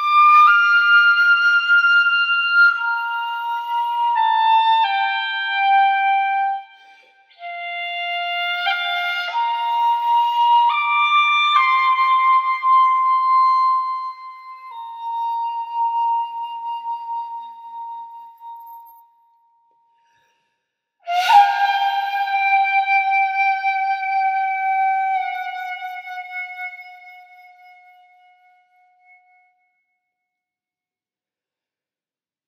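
Solo flute playing a slow melody in held, stepwise notes, falling silent for a couple of seconds past the middle. It then sounds one long note with a sharp breathy attack that slowly fades and sags a little in pitch.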